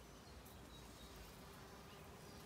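Faint, steady buzzing of bees among flowering wild rose blossoms.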